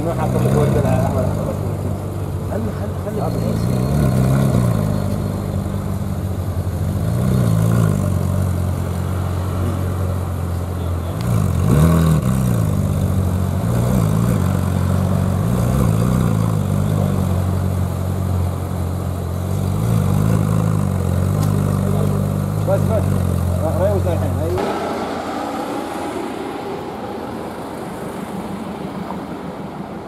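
Ferrari 458 Spider's flat-plane V8 idling at the kerb, with a few brief rises in engine speed. It stops suddenly about 25 seconds in, leaving general street traffic noise.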